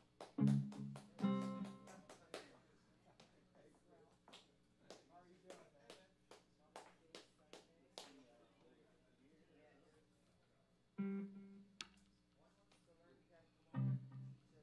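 Stray plucked electric guitar and bass notes between songs: a couple of loud notes near the start, one near the end, and scattered light clicks and handling noise in between, with no continuous playing.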